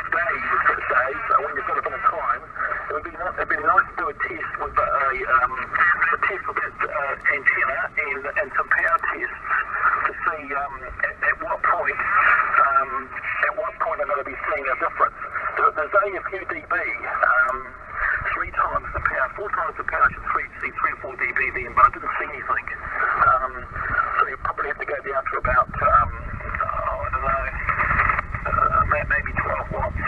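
Voice of a distant station received over HF single-sideband radio and played through a Yaesu FT-857D transceiver's speaker: thin, band-limited speech, with multipath echo on the signal. A low rumble comes in near the end.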